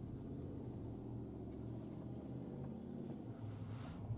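Faint, steady low hum of road and tyre noise inside the cabin of an electric Tesla Cybertruck as it drives, with no engine note; the truck is quiet on a calm, windless day.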